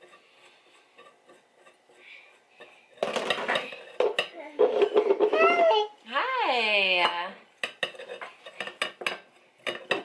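Kitchen utensils scraping and clicking against a glass jar as coconut oil is spooned in. The scraping starts about three seconds in, and a quick run of sharp clinks fills the last couple of seconds. In the middle a toddler's voice rises and falls.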